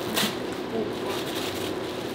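Tissue paper rustling as it is pulled from a gift box: a crisp rustle near the start, then softer crinkling over a steady low room hum.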